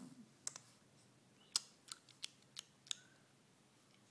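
About six short, sharp clicks at uneven intervals, mostly in the second and third seconds, against a quiet background.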